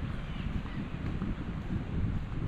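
Wind buffeting the microphone outdoors: an uneven low rumble that comes and goes in small gusts.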